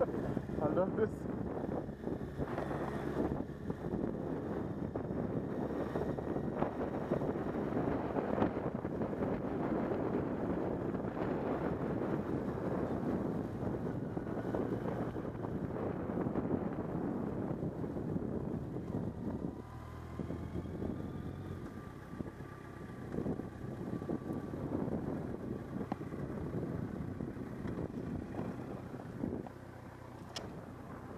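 Motorcycle engine running at low speed with wind buffeting the microphone, a little quieter about two-thirds of the way through.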